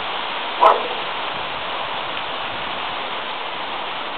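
Steady hiss of heavy rain, with one short dog bark about half a second in.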